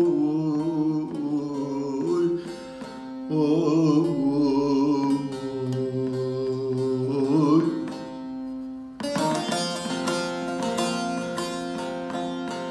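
Bağlama (Turkish long-necked saz) with its drone strings ringing steadily under a man's sung melody of bending, drawn-out notes for the first eight or nine seconds. After a short dip, fast, bright plectrum strokes on the bağlama take over.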